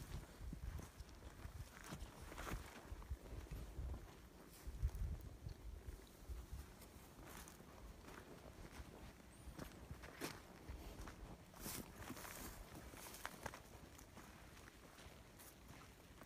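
Faint, irregular footsteps of a person walking through wet grass and over sandy, stony ground, with a few light clicks in between.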